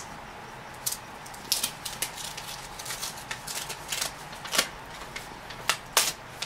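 A paper envelope being torn open and handled: irregular crisp rips and rustles, coming in small clusters, the sharpest ones near the end.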